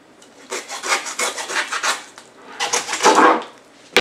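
Hand bone saw (a red-handled hacksaw-style saw) cutting through pork spare-rib bones in back-and-forth strokes, a quick run of light strokes followed by a few heavier ones. A sharp knock comes just before the end.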